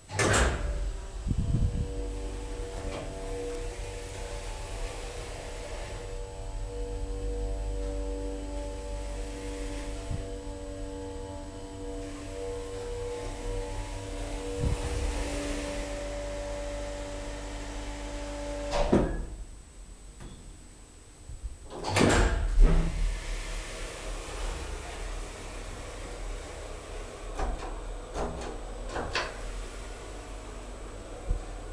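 Old KONE hydraulic elevator running: a clunk at the start, then a steady hum holding several even tones for about eighteen seconds, ending in a clunk as the car stops. After a short lull comes another loud clunk, then a few light rattles and clicks.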